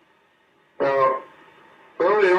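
A man's voice says a single short word or syllable about a second in, over faint room hiss from a meeting-room microphone. It is otherwise nearly quiet.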